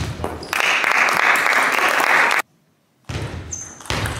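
Spectators clapping after a point in a table tennis match, starting about half a second in and cutting off abruptly a little before the halfway mark, followed by a moment of silence before hall noise and a few ball clicks return.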